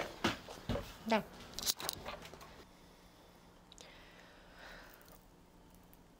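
A few soft clicks and knocks of things being handled on a table over the first two seconds, then quiet room tone.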